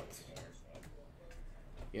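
Faint, scattered clicks and light rustling of trading cards and card packs being handled and shuffled by hand.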